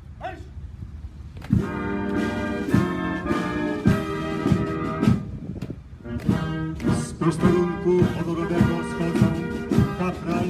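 Military brass band starts playing a march about one and a half seconds in, with brass over a steady drum beat.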